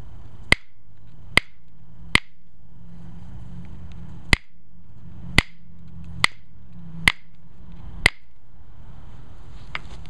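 Copper-tipped pressure flaker pressing flakes off the edge of an Alibates flint preform: eight sharp clicks, each a flake popping free. The clicks come about a second apart, with a longer pause in the middle.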